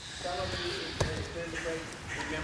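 A single sharp thump about a second in, with indistinct voices around it.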